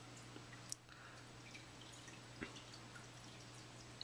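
Near silence in a fish-tank room: a steady low hum with two faint drips of aquarium water, one under a second in and one about halfway through.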